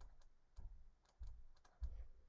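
Faint clicking at about four a second with a few soft low thumps, made by a stylus writing on a tablet.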